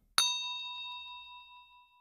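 Notification-bell sound effect: a single bell ding, struck once and ringing out as it fades over about a second and a half.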